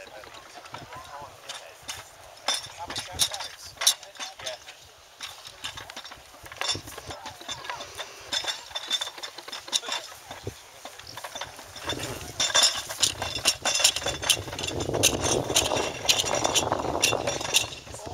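Two-wheeled field gun being hauled over grass by hand: its chain and metal fittings clink and rattle in many irregular knocks, busier near the end, with indistinct voices behind.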